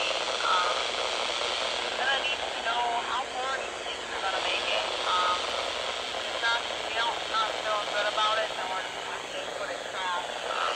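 Thin, narrow-sounding voice chatter, as from a railroad scanner radio, with a low steady diesel locomotive engine running faintly underneath.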